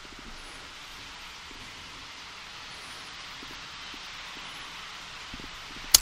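Steady hiss of an open audio line, with a few faint ticks and a sharp click near the end.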